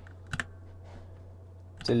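A quick double click from a computer keyboard and mouse about a third of a second in, over a steady low hum. A voice starts just before the end.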